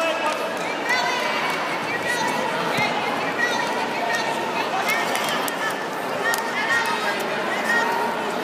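Indistinct chatter of many voices in a large gym hall, a steady background murmur with no single voice standing out.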